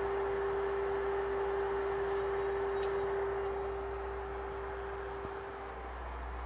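A steady drone: one tone held at a single low-mid pitch over a hiss, easing slightly in level about halfway through.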